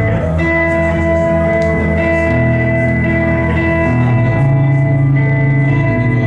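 Live rock band playing an instrumental passage: electric guitars holding ringing chords over bass and drums, loud and steady, the chords shifting every second or two.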